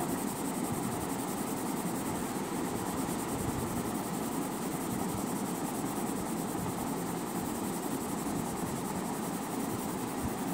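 A steady, even hiss of background noise with no distinct strokes.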